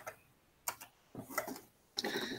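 A few quiet, short clicks at uneven spacing in a pause between speech.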